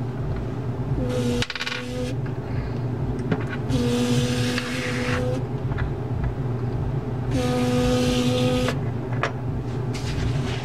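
A child's voice makes three buzzing 'zzz'-like magic sound effects, each held on one flat pitch for a second or so, as the toy's telekinesis. A few light clicks of small toy pieces come between them, over a steady low background hum.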